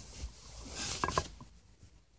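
Bedding rustling as a blanket is pulled and bunched over someone lying in bed, with low handling rumble and a couple of short sharp sounds about a second in, fading to quiet near the end.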